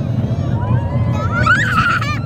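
Wind buffeting the phone's microphone and the rumble of a moving rollercoaster, with a child's high-pitched excited squeal starting about a second and a half in.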